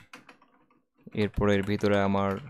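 A few faint keystrokes on a computer keyboard as code is typed, then a voice starts speaking just after a second in.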